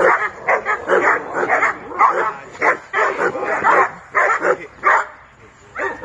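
Pit bull-type dog barking in quick repeated barks, about two a second, worked up by a trainer waving a bite sleeve at it during protection training.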